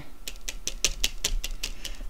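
A quick, uneven run of light clicks and taps, about a dozen in two seconds, from hands handling tarot cards on a table.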